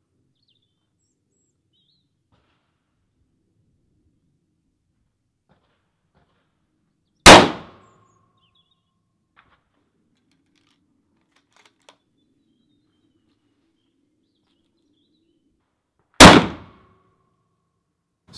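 Two unsuppressed shots from a Remington 700 SPS Varmint bolt-action rifle in .308 Winchester, about nine seconds apart, each very loud and followed by a brief ringing tone. A few faint clicks come between the shots.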